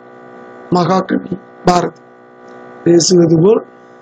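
Steady electrical mains hum, a buzz with many evenly spaced overtones, running under a voice speaking three short phrases.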